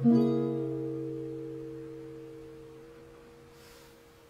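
Acoustic guitar's final chord, strummed once just after the start and left to ring, fading slowly away as the song ends; one higher note lingers longest.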